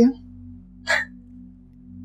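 Soft, steady background music of sustained low drone tones, with one short breathy sound, a quick breath or exhale, about a second in.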